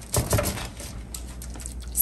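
Silicone basting brush dabbing and sweeping seasoned oil over asparagus spears on a foil-lined baking sheet: a run of irregular soft taps and rustles.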